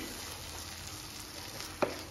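Onion-tomato masala with tomato ketchup sizzling in a nonstick pan while a spatula stirs it through. One sharp tap sounds near the end.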